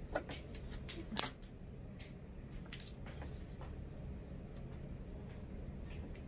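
Faint handling sounds of a cotton face mask and its elastic ear loop being worked by hand, with a few soft scattered clicks and rustles over a low steady room background.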